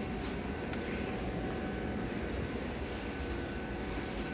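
Steady ventilation noise at the bench, an even hiss with a faint high hum running through it.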